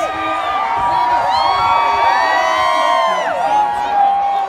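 A large crowd cheering and whooping, many voices at once holding long, gliding "woo" calls.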